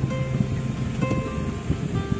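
Background music: an acoustic guitar pop song between sung lines, with a low rumble underneath.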